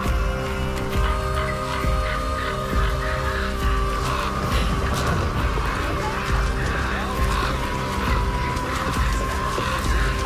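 Background music: sustained held notes over a regular low pulse, with a new higher note coming in about four seconds in.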